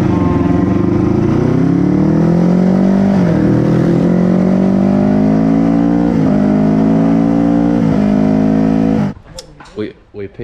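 Racing motorcycle engine at full throttle, heard from an onboard camera, rising in pitch through the gears with upshifts about three, six and eight seconds in. It cuts off suddenly about nine seconds in.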